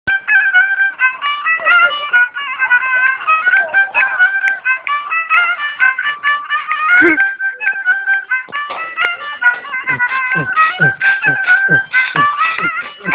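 A horn violin (a violin with a trumpet bell) bowed in a fast melody of quick, stepping notes.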